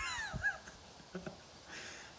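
A man's short, high-pitched laugh that glides down and trails off within the first half-second.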